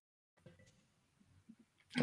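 Near silence: faint room tone, with two tiny clicks about half a second and a second and a half in.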